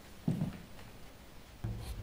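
A soft dull thump with a faint scratchy rub, then a low rumbling drone comes in abruptly near the end.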